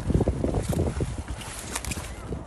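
Knife cutting through cauliflower leaf stalks, with a few short crisp snaps, over a low rumble of wind on the microphone.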